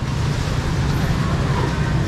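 Steady low machine hum under an even background noise, with faint voices.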